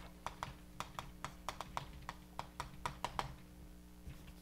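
Chalk writing on a blackboard: a quick, irregular run of sharp taps as letters are written, stopping about three seconds in.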